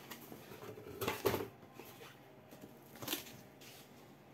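Cardboard box being opened by hand, its flaps scraping and rubbing: a longer, louder scrape about a second in and a shorter one about three seconds in.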